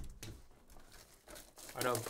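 Clear plastic shrink wrap being torn open and peeled off a trading-card hobby box, crinkling, with a sharp click as it starts.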